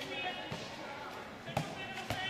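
A handball bounced on a sports-hall floor while being dribbled: two thuds, the louder about a second and a half in, ringing in the large hall. Voices call in the background.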